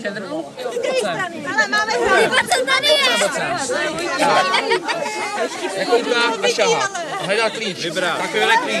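A group of children talking and calling out at once, many voices overlapping in excited chatter.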